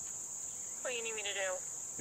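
A steady, high-pitched chorus of insects in the field, with a short burst of a person's voice about a second in.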